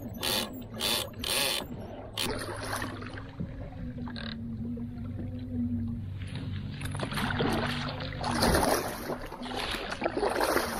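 Kayak paddle handled and stroking through the water, with a few hard knocks of the paddle against the hull in the first two seconds and splashing water toward the end. A steady low hum runs underneath.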